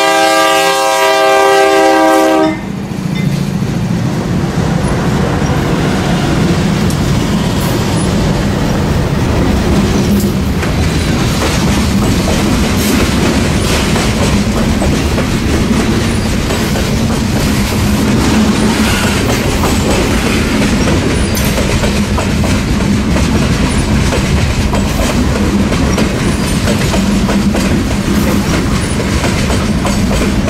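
A GE Dash 8 diesel freight locomotive sounds its multi-chime air horn in one long blast, about two and a half seconds, as it passes close by. Then the locomotives and a long string of freight cars roll past, with steady wheel clatter over the rail joints under a low engine drone.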